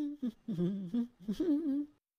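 A voice humming a few short notes with sliding, questioning pitch, in three or four brief phrases.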